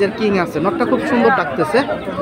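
People talking over one another: close conversation and chatter, speech only.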